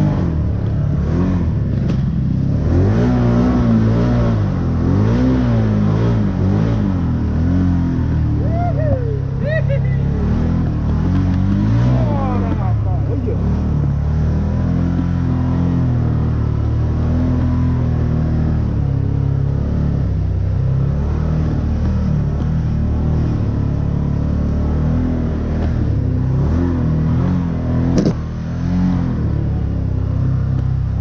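Engine of a Can-Am Maverick turbo side-by-side pulling along a rough dirt trail, its note rising and falling over and over as the throttle is worked. There is a sharp knock near the end.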